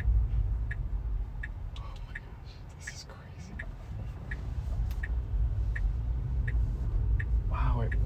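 Low road rumble inside an electric Tesla's cabin, fading as the car slows almost to a stop about halfway through and rising again as it pulls away. Over it runs a regular turn-signal tick, about one every 0.7 seconds.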